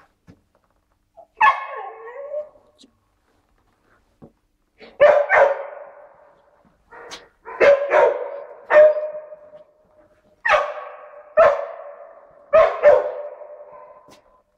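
Dog barking at a closed door, about ten barks in short runs with pauses between, each ringing on in a tiled corridor. It is the bark alert of a search dog signalling that it has located its target behind the door.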